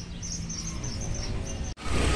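A bird chirping in short, high notes repeated several times a second over a quiet outdoor background. The sound cuts off abruptly near the end, giving way to a low traffic rumble.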